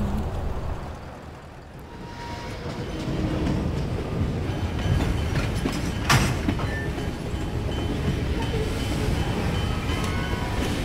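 A train running along the rails: a steady low rumble and rattle that fades briefly and builds back in after about two seconds. A single sharp knock comes about six seconds in.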